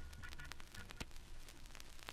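Faint surface noise and scattered crackles from a vinyl 45 rpm single as the song fades out at its end.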